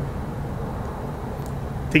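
Steady low outdoor background rumble with no distinct events. A man's voice starts just at the end.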